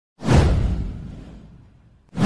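Whoosh sound effect of an animated video intro: one sweep with a deep rumble under it, starting suddenly and fading out over about a second and a half.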